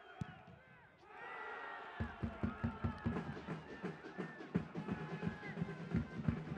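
Stadium crowd cheering a goal, rising about a second in, with a drum beating steadily from about two seconds in.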